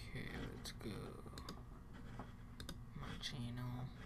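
Scattered clicks of a computer mouse and keyboard. A low wordless voice sounds briefly at the start and again near the end.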